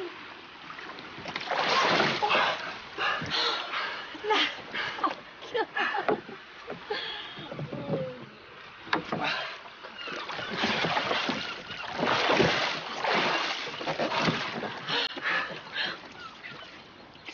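Water splashing and sloshing against a small wooden rowboat as a man in the water comes up over its side, in irregular surges, with short vocal sounds in between.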